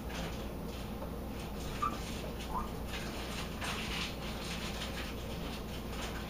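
Faint rustling and soft handling noises as hands shape a raw pork loaf and work with its wrappings, over a steady low hum. Two short high squeaks come about two seconds in.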